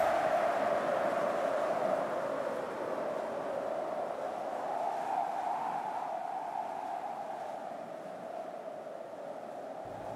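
A steady, hissing drone with a low hum in the middle range, slowly dying away.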